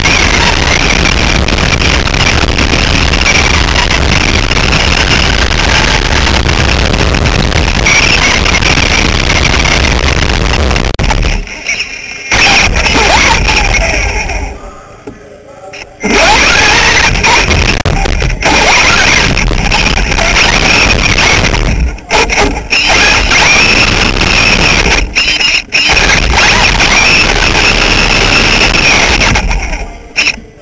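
Onboard sound of a Traxxas Slash RC short-course truck racing on dirt: a loud, distorted whine from its electric motor and drivetrain with tyre and chassis noise. The sound drops away twice, a little over a third of the way in and around the middle, with a few brief dips later.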